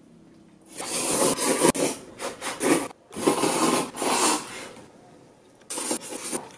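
Someone slurping noodles loudly through the mouth, in two long bouts of a couple of seconds each, then a short one near the end.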